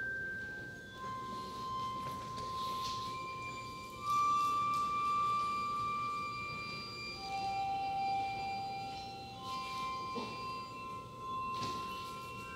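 Contemporary chamber ensemble of violin, cello, piano and mallet percussion playing avant-garde music: long, pure, high held tones that enter one after another and overlap, with a few soft struck notes.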